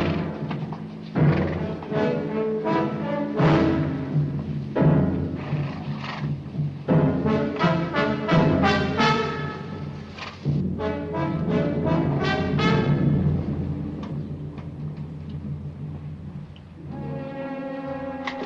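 Orchestral film score with brass and timpani, playing a run of short, loud accented chords.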